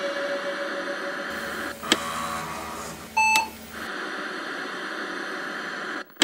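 A steady noise bed, with a sharp click about two seconds in and a short electronic beep a little past three seconds.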